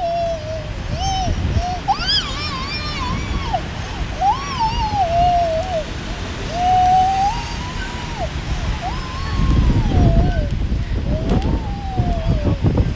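Playground swing hangers squealing with each swing of the chains: a pitched squeak that rises and falls, repeating about every two seconds.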